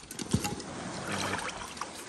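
Footsteps and gear being handled around inflatable boats on a rocky, wet shoreline, with one sharp thump about a third of a second in and scattered small knocks and scuffs.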